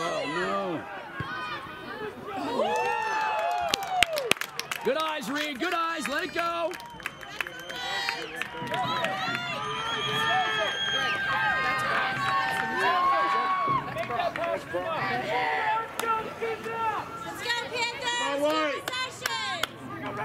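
Voices around a soccer field: spectators and players calling out and chatting, no words clear. There are a few sharp knocks between about four and seven seconds in.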